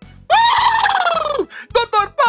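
A cartoon character's high-pitched excited cry, held for about a second and falling in pitch, followed by the start of quick speech, over a light children's music bed.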